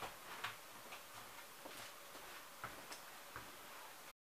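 Quiet room with a few faint, irregularly spaced clicks and light taps from a person moving about and stepping away from a table.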